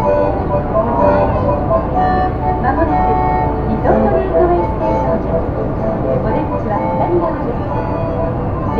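Disney Resort Line monorail car running, a steady low rumble inside the car, with indistinct voices of people talking over it.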